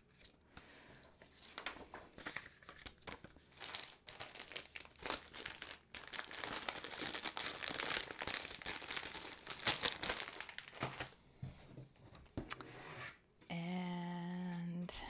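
A clear plastic bag and paper being handled, crinkling and rustling in a dense run of crackles that is thickest in the middle and thins out after about eleven seconds.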